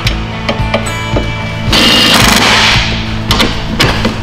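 Makita cordless impact driver hammering a bracket bolt in, running for about a second near the middle, over background music.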